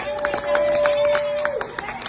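A woman's singing voice holding one long steady note that ends about a second and a half in, over audience clapping.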